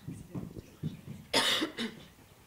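A person coughing: one loud cough about one and a half seconds in, then a short second one, over faint murmuring.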